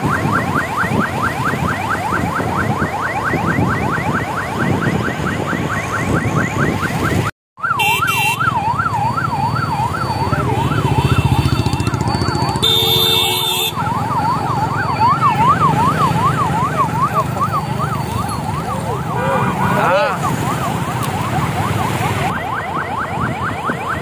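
Police vehicle siren in a fast yelp, its pitch rising and falling several times a second, over road and crowd noise. The sound cuts out abruptly for a moment about seven seconds in.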